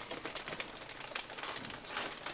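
Rummaging through plastic bags of fishing lures: a quick, uneven run of small clicks and crinkling rustles as hard lures knock together.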